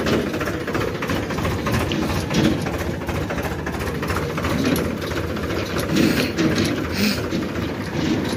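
Powertrac Euro 50 tractor's three-cylinder diesel engine running steadily as it tows a loaded farm trolley, with a fast even diesel clatter.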